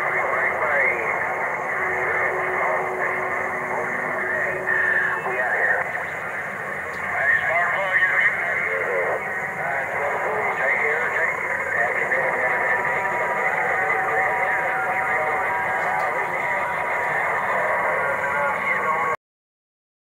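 Garbled voices coming through a CB radio receiver, thin and narrow, with steady tones and crackle underneath; the signal cuts off just before the end.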